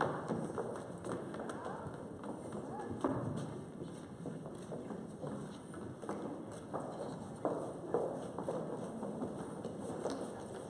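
Many footsteps thudding on a stage floor as a crowd of performers walks and runs on, uneven knocks and shuffles throughout.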